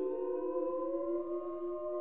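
A six-voice vocal ensemble (soprano to bass) and a viola sustain a close chord of long held notes. A couple of the lines glide slowly upward about halfway through as the singers shift gradually between vowels.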